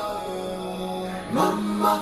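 Background film score with long held notes in a chant-like vocal style. About one and a half seconds in, the pitch slides up and settles on a new held note.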